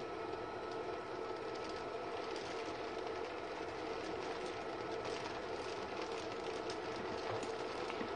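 Older Ecotec A3 pellet burner running on test in a wood boiler: a steady mechanical hum with a constant low tone.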